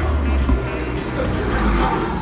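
A steady low rumble that fades out near the end, under faint background music, with a light clink of cutlery on a plate about half a second in.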